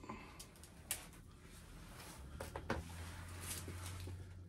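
Packing tape on a mailed package being cut and the package handled: faint scattered clicks and rustling, with a low steady hum coming in about halfway through.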